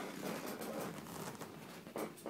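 Rustling and scraping handling noise from the phone as it is swung down, with a sharp knock right at the end.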